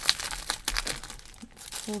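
Clear plastic sleeve on a pack of patterned paper crinkling as it is handled, an irregular run of crackles and rustles.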